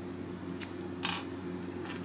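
Faint handling noises of a metal tip being swapped in a micromotor hammer handpiece: a few light clicks and a brief scrape about a second in, over a steady low hum.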